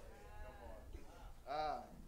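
Faint voices at a low level, then one short vocal call about one and a half seconds in that rises and falls in pitch.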